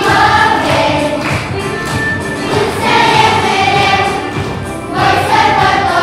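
A children's choir singing a song in sustained phrases, with a brief dip in level just before a new phrase about five seconds in.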